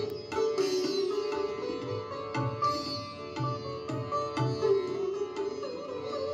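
Background instrumental music led by a plucked string instrument in an Indian classical style. Notes are plucked in quick succession, some sliding in pitch, over a sustained drone with a soft low beat.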